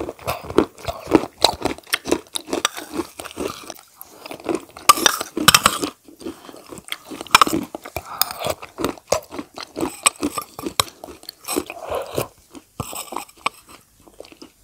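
Close-miked eating: a person biting and chewing spoonfuls of food in a run of irregular crunches and crackles, loudest in the middle of the clip.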